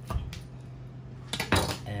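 Kitchen knife cutting through a multi-grain tortilla wrap and knocking against a wooden cutting board, with a short knock just after the start and a louder clack about one and a half seconds in.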